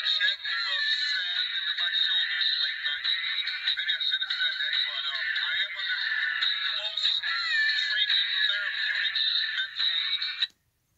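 Re-recorded voice clip played back through a small toy voice-box speaker, tinny and harsh with no bass, running without a break.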